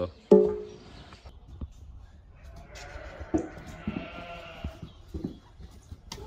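Sheep bleating: one loud, short bleat about a third of a second in, then a longer, fainter bleat around the middle, with a few knocks in between.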